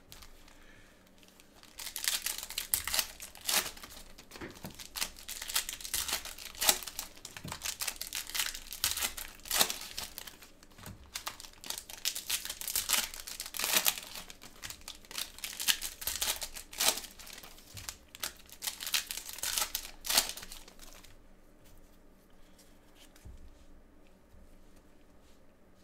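Foil packs of 2020 Panini Select football cards being torn open and handled with gloved hands: a long run of sharp crinkling and tearing of the foil wrappers, which dies down a few seconds before the end.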